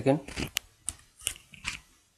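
A spoken word ends, then four short clicks and rustles follow, about one every half second.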